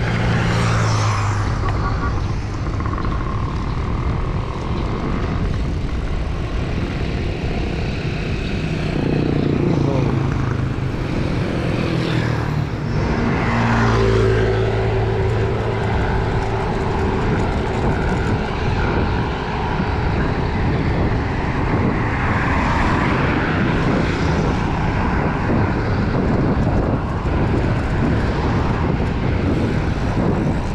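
Loud, steady wind rush buffeting the camera microphone on a moving road bike. Engines of passing motor vehicles hum through it around the first second and again from about nine to fifteen seconds in, some falling in pitch as they go by.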